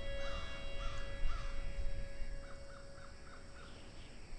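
A bird calling over and over, about two calls a second, then a quicker run of five short calls near the middle, over faint held notes of background music that drop away about halfway through.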